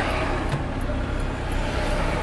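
Steady low rumble of a car moving in city traffic, heard from inside the cabin: road and engine noise mixed with nearby vehicles.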